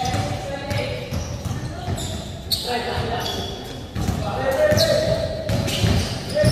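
Basketball court sounds in a large echoing hall: a ball bouncing with low thuds, with faint voices of other people.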